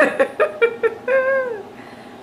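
A woman laughing: several quick bursts of laughter, then one drawn-out, high-pitched note that falls away about a second and a half in.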